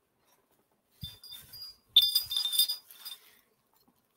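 Metal wind chime tubes clinking and ringing: a soft tinkle about a second in, then a brighter strike near two seconds in that rings on for about a second before fading.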